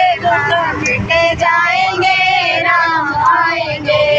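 A high-pitched woman's voice singing a Hindi song with long held, sliding notes, over the low steady rumble of a bus.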